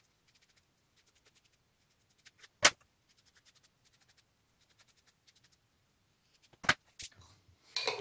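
Faint rapid tapping and scratching of a glue sponge being dabbed over a perforated metal tweeter plate, with a sharp click about two and a half seconds in. Two more clicks come near the end, as the lid goes onto a glass jar.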